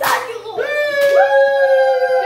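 A long drawn-out howl-like voice note begins about half a second in, after a brief rush at the start. A second, higher note glides in and joins it about a second in.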